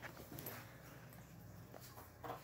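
Quiet pencil sounds on paper: faint scratching and a few soft taps as a pencil traces around a coin held on the sheet.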